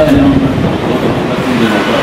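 Indistinct voices in a conference room over a steady background noise, with short bits of talk near the start and again near the end.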